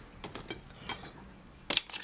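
Small clicks and knocks of makeup containers being handled in the trays of a makeup train case, with a louder burst of two or three sharp clacks near the end.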